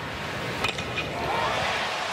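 A baseball bat strikes the pitch with one sharp crack about half a second in, and the stadium crowd's cheering swells up after it as the ball carries for a home run.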